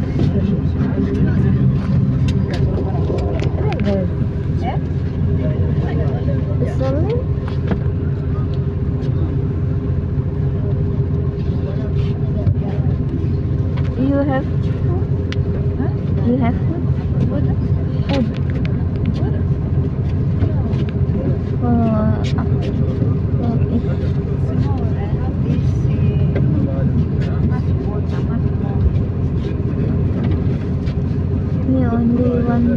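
Steady low rumble of a vehicle's engine and road noise, heard from inside the moving vehicle, with indistinct voices in the background.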